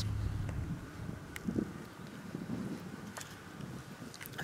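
Wind buffeting the camera microphone as a low, unsteady rumble, with a couple of faint small clicks.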